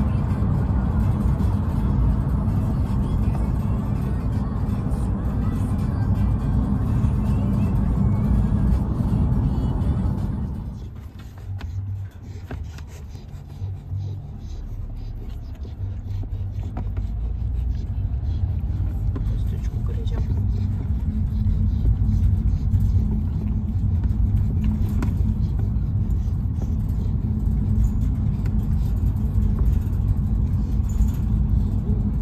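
Steady low rumble of road and engine noise inside a moving car's cabin. It drops off sharply about eleven seconds in, then builds back up over the next several seconds.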